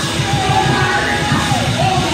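Loud, fast church praise music with a steady driving beat, and a voice shouting over it.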